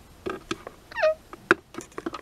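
Small plastic toy figures tapped and handled on a hard surface close to the microphone: a handful of sharp taps, with a short falling pitched squeak about a second in.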